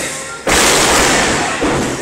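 A wrestler slammed down onto the wrestling ring's canvas: one loud, sudden impact about half a second in, with a noisy tail that dies away over about a second.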